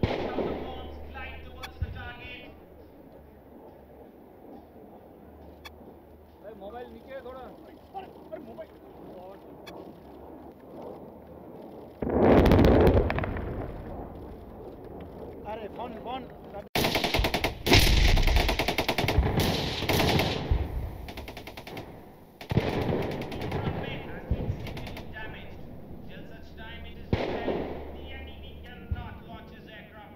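Air-dropped munitions exploding on a ground target: a heavy blast about twelve seconds in that dies away over a couple of seconds. From about seventeen seconds in, a rapid string of bangs runs for several seconds, and another burst of detonations follows soon after.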